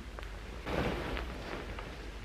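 Duvet rustling as it is pulled up over the head: a short swell of soft cloth noise a little over half a second in, over a low steady hum.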